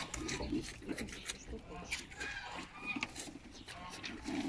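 Moose calves browsing on cut leafy branches: leaves rustling and twigs crackling in a run of short, sharp sounds as they pull and chew. Low voices can be heard in the background.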